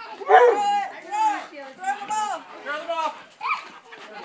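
A person's high-pitched voice making a string of short rising-and-falling vocal sounds, about two a second.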